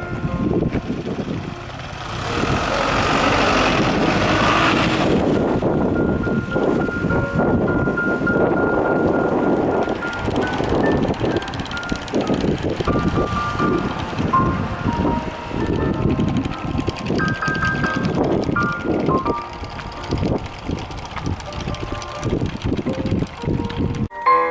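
A simple melody of thin, high notes plays over heavy wind buffeting on the microphone, with a louder rush of noise from about two to five seconds in.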